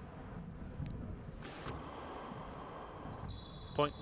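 Handball play on an indoor court, heard faintly over a steady hum: a few soft knocks of the ball. A short spoken score call comes near the end.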